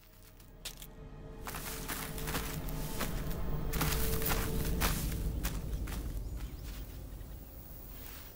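Background music that swells to a peak about halfway through and then fades, with scattered short sharp clicks through it.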